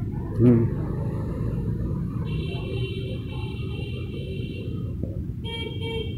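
A horn sounding over a steady low rumble: one held note from about two seconds in, then short repeated honks near the end.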